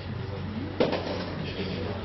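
A sudden knock about a second in, amid short, low voice-like sounds, over a steady hum.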